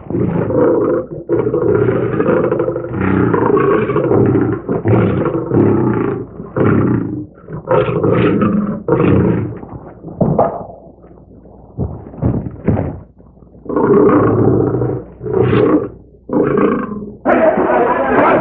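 Animal roars and growls, a run of loud calls of about a second each with a quieter gap midway, heard through the thin, muffled sound of an old film soundtrack.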